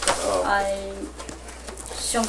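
A person's voice: a short, steady-pitched held vocal sound, like a drawn-out 'ooh' or 'hmm', about half a second in, followed by quieter talk.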